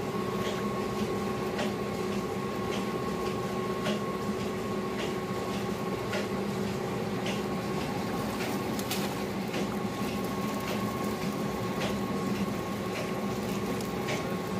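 A steady mechanical hum holding several fixed pitches, with scattered light clicks and taps over it.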